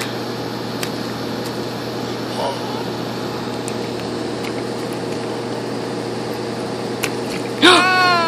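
A steady low mechanical hum with a few faint light ticks. A high-pitched voice rises and falls near the end.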